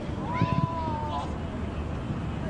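A shout from the pitch: one long call that rises at the start and is held for about a second, typical of a player calling out during play.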